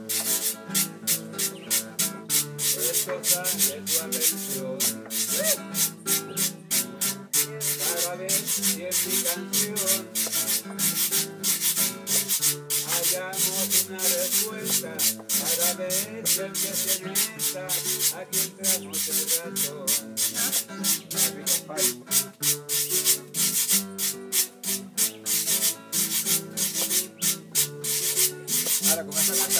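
Green bananas being grated by hand on a grater: rapid, rhythmic scraping strokes, about four a second, over strummed acoustic guitars.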